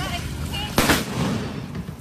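A single sharp explosion from an explosive charge going off beside an inflatable boat, just under a second in, dying away over the following second.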